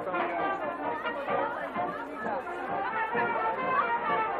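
Many spectators' voices chattering at once, indistinct, with music playing in the background.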